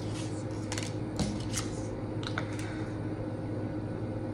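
Tarot cards being drawn off a deck and laid on a table: a few short, soft card clicks and slaps in the first half or so, over a steady low hum.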